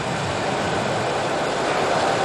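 Falcon 9 rocket's nine Merlin first-stage engines firing at liftoff: a steady, loud rushing noise with no breaks.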